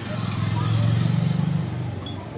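A motor vehicle engine running with a low pulsing hum that swells and then fades, like a vehicle passing by.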